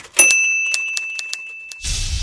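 Logo-intro sound effects: one high bell ding that rings and fades for about a second and a half over a run of quick clicks, then a whoosh near the end.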